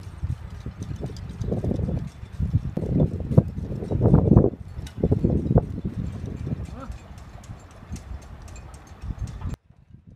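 Wind gusting on the microphone, heaviest in the middle few seconds, with light splashing and small knocks as a person wades in shallow water beside a boat. The sound cuts off suddenly near the end.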